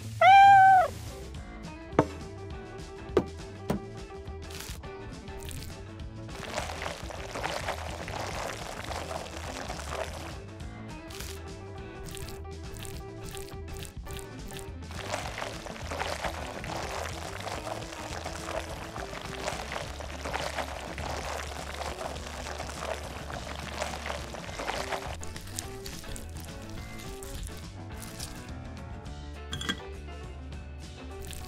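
A single cat meow, the loudest sound, in the first second, followed by light background music. A few sharp clicks come a couple of seconds in, and stretches of soft rustling noise run under the music.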